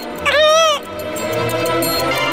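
An animated mouse's single short cry, about half a second long, its pitch rising then falling, over background music.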